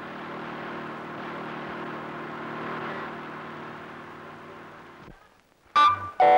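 A car's engine running with road noise as it drives along, swelling slightly and then fading out about five seconds in. After a brief silence, music starts abruptly just before the end.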